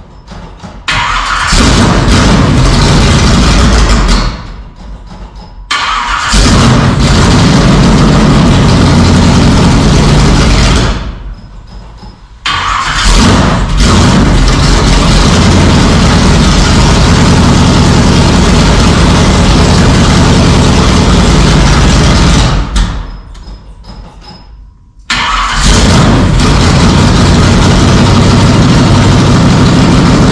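Chevrolet S-10 pickup's engine being started and running loud, dying away four times and each time catching again abruptly at full volume.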